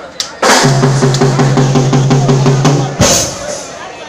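Live band playing a short loud burst on stage during a soundcheck: drums with a held low bass note under a quick regular beat, cut off by one sharp loud hit about three seconds in.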